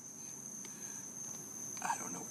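Crickets chirping, a steady high-pitched trill that carries on unbroken.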